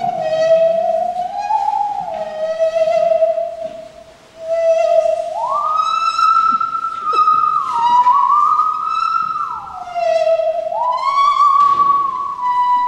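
Bowed musical saw playing a slow melody: a single pure, singing tone that slides smoothly up and down between notes, dipping briefly about four seconds in. Short plucked notes sound alongside it at a steady pulse.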